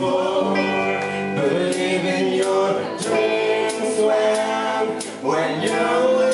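Live rock band playing: electric guitar and drums with cymbal hits under a held, singing voice, heard through a room with a club PA.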